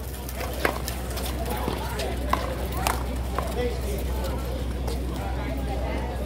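A small rubber handball smacked by hand and rebounding off the concrete wall and court in a one-wall handball rally: several sharp smacks spread over the first three and a half seconds.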